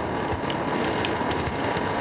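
Steady background hiss and rumble of a home cassette tape recording, with a faint steady tone running through it.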